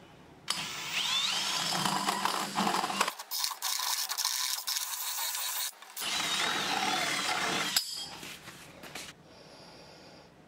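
A power drill with a hole saw cutting a round hole through the wall of a plastic enclosure. It starts about half a second in, runs with a couple of brief dips and a squealing, wavering whine from the cut, and winds down near the end.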